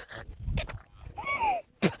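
A woman coughing and gagging after inhaling a fly, with a short voiced retch that falls in pitch a little over a second in.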